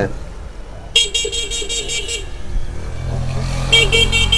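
A motor vehicle's horn sounding in a rapid stutter of beeps for just over a second, then an engine rumble growing louder, with a second short burst of stuttering beeps near the end.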